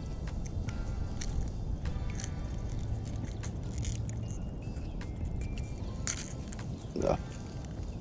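Soft background music over a steady low rumble of wind, with scattered small clicks as treble hooks are worked out of a largemouth bass's gills with pliers. A short grunt comes near the end.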